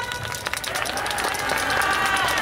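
Audience applauding, many hands clapping in a dense patter as the dance music cuts off at the start; a faint voice carries over the clapping from about half a second in.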